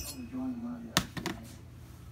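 A sharp metallic click about a second in, followed by two lighter clicks: a steel engine valve knocking against an aluminium GX390 cylinder head as it is handled.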